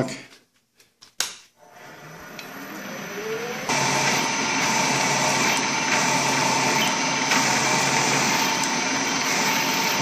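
A few sharp clicks, then a vertical milling machine's spindle spinning up with a rising whine over about two seconds and running steadily as a 3/8-inch end mill is fed down into a metal plate, cutting a counterbore.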